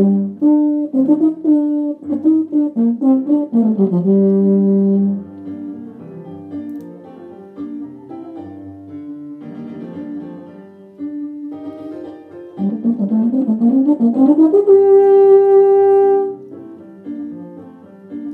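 Euphonium playing a solo melody with piano accompaniment: quick phrases, a held low note about four seconds in, a softer stretch, then a fast rising run into a long, loud held high note near the end.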